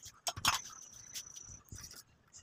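A metal spoon clicking a few times against a steel cooking pan while stirring a thick curry, followed by a faint, steady high-pitched tone lasting about a second.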